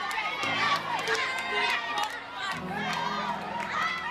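A group of young people shouting and cheering together, with sharp hits among the voices, over background music with sustained notes.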